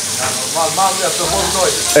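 Food frying in pans on a restaurant kitchen stove: a steady sizzling hiss, with a voice speaking quietly underneath.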